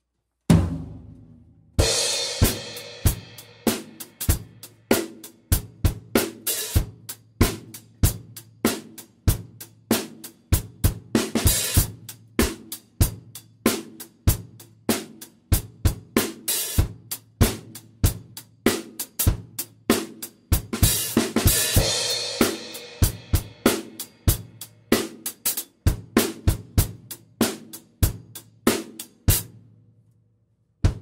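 Acoustic drum kit played on its own, with no backing track: one opening hit, then from about two seconds in a steady groove of kick, snare and hi-hat. Crashes on the Meinl cymbals come at about two seconds, around eleven seconds and again around twenty-one to twenty-three seconds. The playing stops just before the end.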